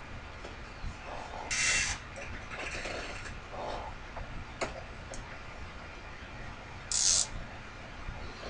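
Mini bench lathe running with a quiet, steady low hum, broken by two short hissing sounds and a single sharp click about halfway through.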